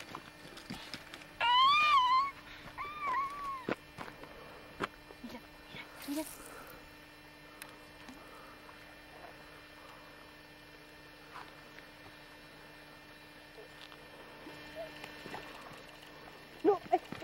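A young child's high-pitched, wavering squeal about a second and a half in, followed by two shorter rising-and-falling cries; a brief rush of noise comes about six seconds in.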